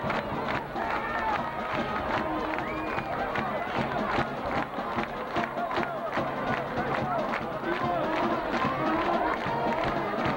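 Football stadium crowd: a steady din of spectators talking and calling out close by, with music going on underneath and scattered sharp claps or knocks.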